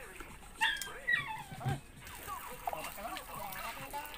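A small dog yelping twice in quick succession, short high cries that fall in pitch, amid background voices.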